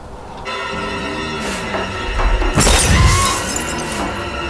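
Tense horror-film music with held tones, broken a little over halfway through by one loud, sudden crash of shattering glass with a deep boom under it. The music then carries on.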